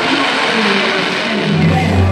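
Fireworks launching and bursting: a dense hiss and crackle over the show's soundtrack music. Near the end the crackle gives way to a low held note in the music.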